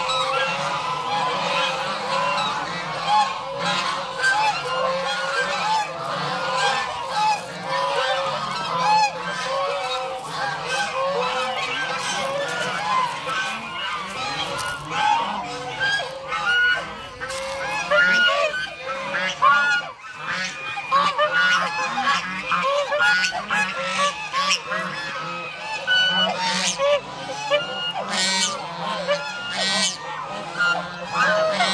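A large flock of white domestic geese honking, with many short calls overlapping in a continuous chorus.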